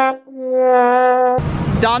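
Sad trombone comic sound effect: the tail of one brass note, then the final, lowest note held for about a second before cutting off. Outdoor background noise and voices follow near the end.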